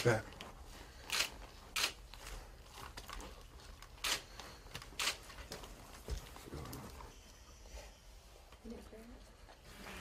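Faint, scattered rustles and scrapes of a flight helmet and its hose being handled as it is pulled on and adjusted, with about four brief sharp sounds in the first five seconds.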